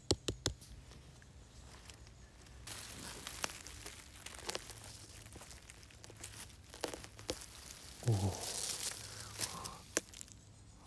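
A few quick knocks of fingers on the cap of an oak bolete, then the mushroom being twisted out of the forest floor: crackling and tearing of soil and mycelium, like strings crackling, with rustling of leaf litter. A short vocal murmur about eight seconds in.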